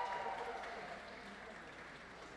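Applause, loudest at the start and dying away after about a second.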